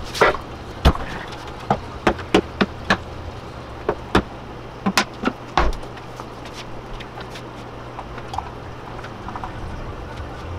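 A run of sharp knocks and clicks as plastic buckets and containers are handled and set down, stopping about halfway through, over a steady low hum.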